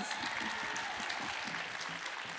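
Audience applauding steadily in a large hall.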